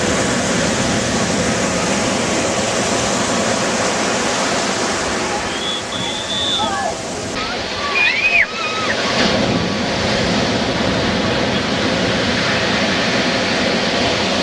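Surf breaking and washing in the shore break, a steady rushing noise, with a few short voices calling out in the middle.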